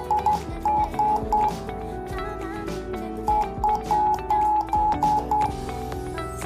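A Morse-code beat tone, a steady whistle near 850 Hz, from a shortwave receiver in upper-sideband mode, keyed on and off in short and long beeps as a telegraph key shifts the Octopus CW transceiver kit's local oscillator. There is one run of beeps at the start and another from about three seconds in.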